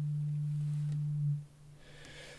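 Eurorack modular synthesizer holding one steady low note, which dies away about one and a half seconds in, leaving faint background hiss.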